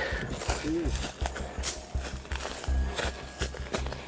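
Footsteps crunching irregularly through dry grass and brush on a hillside trail, with low thuds between steps.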